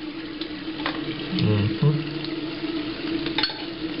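Toothbrush scrubbing teeth: a scratchy, wet brushing rasp with a few short clicks of the brush against the teeth.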